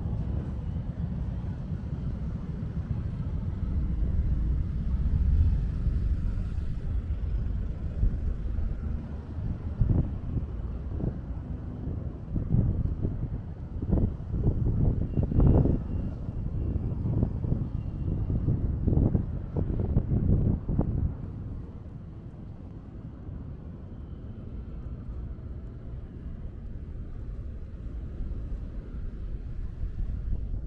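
Steady low rumble of road traffic on a wide multi-lane city road. From about ten to twenty-one seconds in, irregular low buffets come and go over it; after that it settles quieter.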